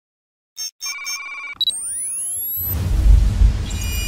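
Synthesized intro sting. Three short electronic beeps and a held tone are followed by rising pitch sweeps, and then a deep bass rumble with heavy hits comes in a little before the last second and a half.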